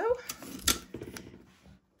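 Hands smoothing a fabric lining panel and pressing blue painter's tape onto it: a soft rustle with one sharp click a little under a second in.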